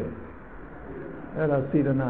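A man's voice giving a talk: a pause of about a second and a half, then he resumes speaking near the end.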